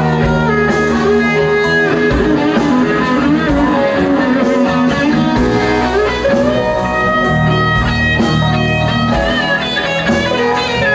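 Live blues-rock band playing an instrumental passage, with electric guitar to the fore over bass and a drum kit. Cymbal strokes keep a steady beat.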